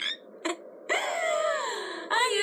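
A short blip about half a second in, then a voice giving one long moan that slides slowly down in pitch.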